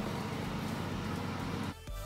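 Steady outdoor background noise with a low hum, which cuts out suddenly near the end as background music with a beat starts.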